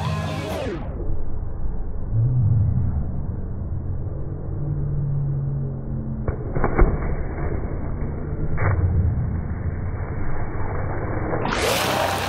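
Slowed-down audio of slow-motion footage: the surrounding sound is dragged down in pitch into a muffled low rumble, with a few dull knocks in the middle. Normal full sound cuts back in near the end as the dog hits the water with a splash.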